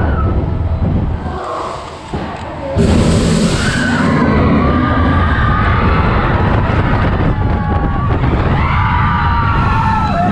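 Roller coaster mine-train cars rumbling along the track at speed, with riders screaming and cheering. About three seconds in, a sudden loud rush of noise breaks in as the ride speeds up.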